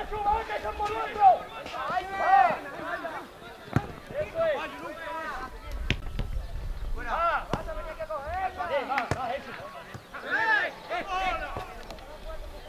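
Voices calling and shouting across an outdoor football pitch, not clear enough to make out, with a few sharp thuds of the ball being kicked.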